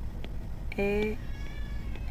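A faint, high-pitched wavering call lasting about half a second, just after the spoken letter "E".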